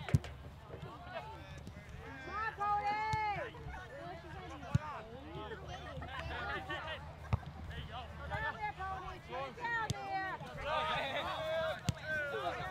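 Indistinct voices of players and spectators calling out, several at once and overlapping. A few short sharp knocks cut through, the loudest right at the start and another a little before the five-second mark.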